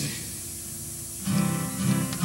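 Acoustic guitar being strummed: after a quieter first second, chords start about a second in and continue in a steady rhythm.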